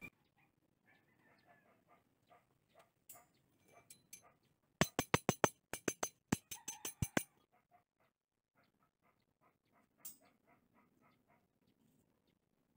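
A quick run of about a dozen sharp metallic clicks over a couple of seconds, about halfway through, as a bent steel rod is handled on a concrete floor; fainter light ticks and taps of handling come before and after.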